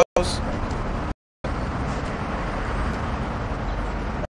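Steady background noise of city traffic, with the sound cutting out to silence for a moment about a second in.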